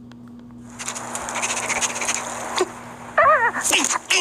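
Animated film trailer soundtrack: over a faint steady hum, a rushing noise starts about a second in, and near the end a cartoon squirrel gives loud, high, wavering squeaks.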